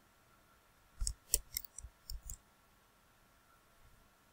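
A rapid run of computer mouse clicks, about a second in and lasting about a second and a half, while lines are selected and drawn in a CAD sketch. Faint room tone otherwise.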